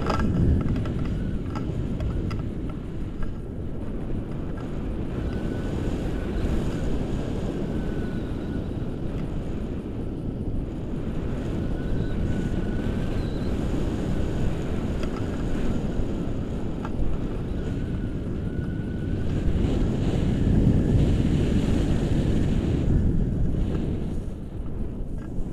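Wind rushing over the microphone of a camera carried in flight on a tandem paraglider: a steady low rumble of airflow that swells a little near the end.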